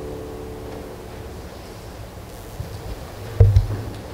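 The last chord of the accompaniment dies away in the first half second, leaving a low steady room rumble. About three and a half seconds in come two loud low thuds, with fainter knocks before them, as the choir members step down and move off.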